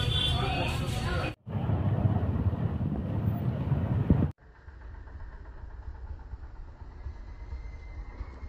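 Outdoor ambience of voices and vehicle rumble, in three separate takes with abrupt cuts about a second and a half in and about four seconds in. The last part is quieter and steadier.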